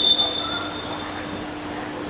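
Referee's whistle: one long, steady, shrill blast that starts loud and fades out after about a second and a half.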